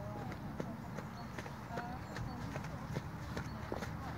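Hoofbeats of a ridden horse trotting on an all-weather arena surface: a run of sharp, irregular clicks over a steady low rumble.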